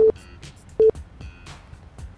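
Countdown beep sound effect: two short, identical electronic beeps, one at the start and another just under a second later.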